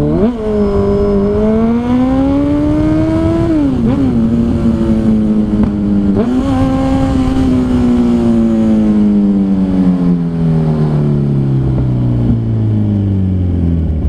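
Kawasaki Z1000 R inline-four motorcycle engine running under way, heard from the rider's seat. The engine note climbs, drops sharply a little under four seconds in, jumps up again about six seconds in, then slowly falls away.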